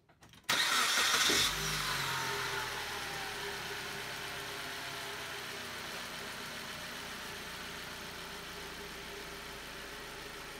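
An engine starting: it fires up suddenly about half a second in, is loudest for about a second, then settles into a steady idle. A whine falls in pitch over the next couple of seconds as it settles.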